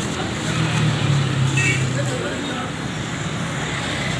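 Outdoor roadside noise with background voices; a vehicle engine's low hum swells about half a second in and fades after a couple of seconds as it passes.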